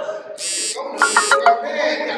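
Two short, harsh buzzing bursts, each about a third of a second long and about half a second apart, with a few sharp clicks during and just after the second one.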